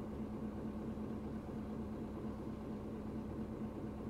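Steady hum and hiss inside a stopped car's cabin, the engine idling, with one constant tone running through it and no changes.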